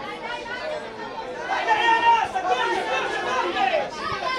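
Several voices talking and calling out at once: spectators and young players shouting during play on a football pitch, louder about halfway through and again near the end.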